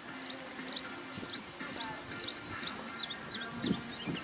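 A bird calling repeatedly, short high chirps about two a second, over a faint steady low hum.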